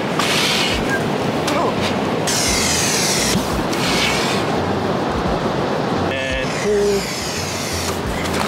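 Steady wind noise on the microphone with surf, over the wet squelch of waterlogged sand as a plastic razor-clam gun is pushed and worked down into it. A short voiced exclamation comes about six seconds in.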